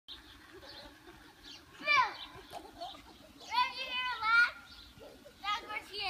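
Young children shrieking and squealing at play: a short falling squeal about two seconds in, a longer held shriek in the middle, and more short cries near the end.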